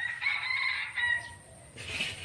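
A rooster crowing once, a pitched call lasting about a second.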